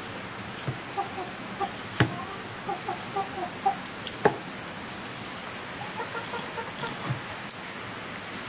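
Chickens clucking in short bursts over a steady background hiss, with two sharp knocks about two and four seconds in.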